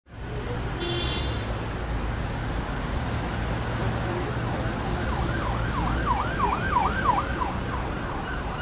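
City street traffic noise, a steady low rumble, with an emergency vehicle siren wailing from about five seconds in, its pitch sweeping up and down quickly, about three times a second.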